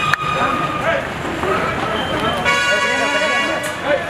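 Crowd chatter, with a vehicle horn sounding once for just over a second, starting about two and a half seconds in.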